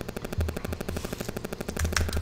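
A fast, even run of small clicks, about a dozen a second.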